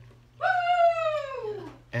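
One long call from an animal, about a second and a half long, falling steadily in pitch.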